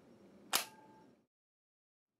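A click-type torque wrench tightening the leak detector's extra-long probe fitting gives one sharp click about half a second in, with a brief metallic ring: the set torque of about 35 inch-pounds has been reached.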